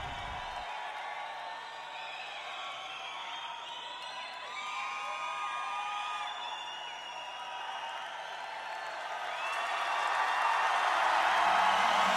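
Breakdown in an early-90s techno/trance track: the kick and bass drop out about a second in, leaving a wash of high sounds with gliding, arcing pitches that swells steadily louder toward the end as a build-up.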